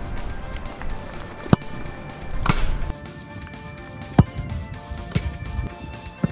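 A football struck hard in a powerful mid-range shot: a sharp thud about one and a half seconds in, then another impact about a second later, with more thuds later on. Background music plays throughout.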